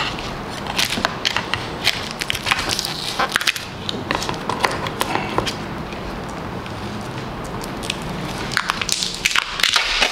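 Brown paper and tape packaging being torn and crumpled off a wooden box: a continuous run of crackling and rustling, with sharp clicks scattered through it.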